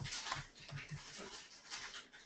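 Computer keyboard typing: faint, irregular key clicks as a word is typed out letter by letter.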